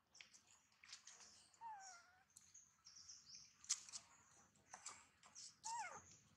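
Faint bird chirping: many short, high chirps, with a couple of short falling calls, one near two seconds in and one near the end.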